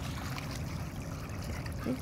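Faint splashing and lapping of shallow puddle water as a small Chinese Crested dog bites at the water's surface.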